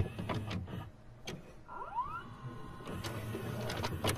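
Video-cassette player mechanism sound effect: a series of mechanical clicks and clunks, a short rising motor whine about two seconds in, then a faint steady hum as the tape plays.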